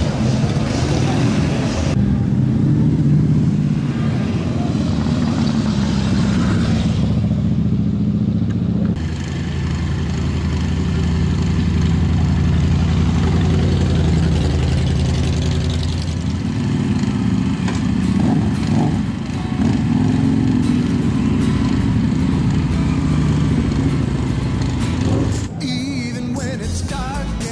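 Several Harley-Davidson V-twin motorcycles running at low speed as they ride past, a steady low engine sound, with crowd voices behind. The sound changes abruptly a couple of times, about two and nine seconds in.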